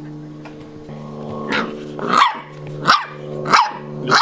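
Six-week-old Brittany puppy barking: four short barks about two-thirds of a second apart in the second half, over a steady low hum.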